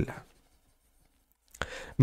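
A stylus writing on a drawing tablet: mostly near silence, then a faint click and a brief soft scratch near the end.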